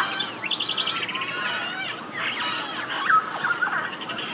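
Dense chorus of Amazon rainforest birds: many overlapping chirps, whistles, sliding notes and rapid trills, with a burbling, electronic quality like a video game.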